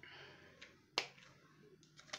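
One sharp click about a second in, with a fainter tick shortly before it, over quiet room tone.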